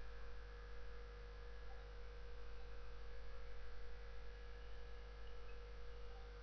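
Steady low electrical mains hum with a faint hiss, unchanging throughout.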